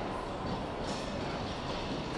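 Steady background din of a large exhibition hall: a constant low rumble with indistinct crowd noise and no clear single event.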